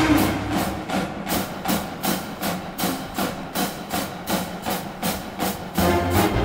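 The full marching band cuts off and the percussion carries on alone, keeping a steady beat of bright, ringing strikes about two to three times a second until the band comes back in at the end.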